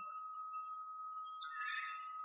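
A faint, steady high-pitched tone, one pitch held evenly throughout.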